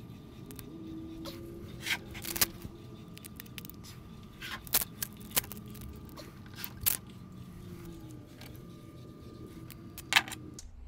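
Reinforced tape being pulled off its roll and wrapped around prismatic battery cells, with scattered sharp crackles and clicks over a steady low background hum.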